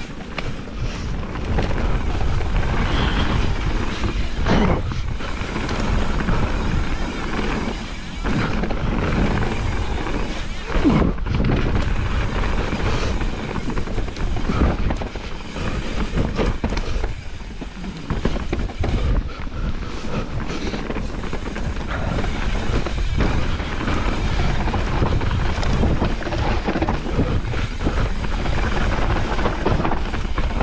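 Mountain bike ridden fast down a dirt forest trail, heard from an onboard camera: tyres on dirt and the bike rattling over roots and rocks in frequent small knocks, with wind noise on the microphone throughout.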